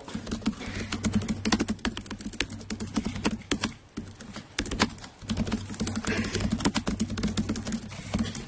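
Fast typing on a laptop keyboard: a run of quick, irregular key clicks with a couple of short pauses, over a steady low hum.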